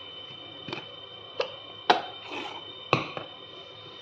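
A plastic mayonnaise squeeze bottle handled on a kitchen counter: four sharp clicks and knocks, the loudest about two and three seconds in.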